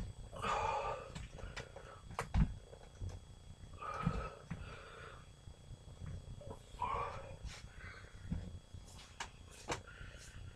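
A man's heavy, effortful breaths or grunts, three of them about half a second each, during leg-raise exercise. Scattered light clicks and a few soft thumps come between them, the loudest thump about two and a half seconds in.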